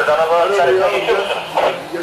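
A person speaking; only speech is heard.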